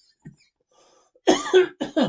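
A person coughs twice in quick succession, a little over a second in, the second cough shorter.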